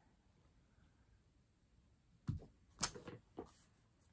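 Near silence, then a few soft, short knocks about two seconds in as a clear acrylic stamp block is pressed onto card stock and lifted off.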